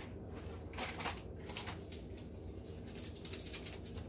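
Groceries being handled: a few light rustles and taps of packaging as items are set down and picked up, over a low steady hum.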